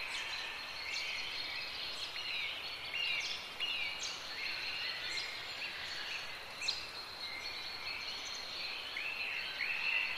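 Several birds chirping and calling, with many quick downward-sweeping calls and a thin steady high tone over a background hiss.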